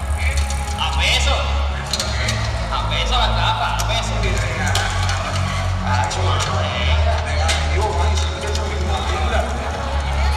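Loud music with a heavy, steady bass and a voice over it, played through a concert sound system in an arena.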